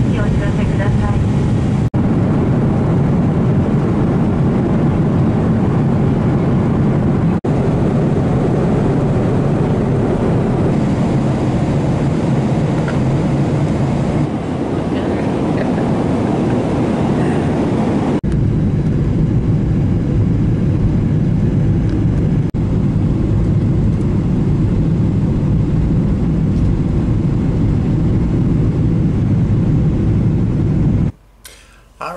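Airliner cabin noise: a loud, steady, low rumble with a few brief dropouts.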